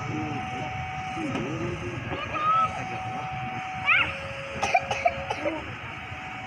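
Outdoor ambience beside a railway line: a steady low background hum with distant voices and a few sharp clicks about five seconds in.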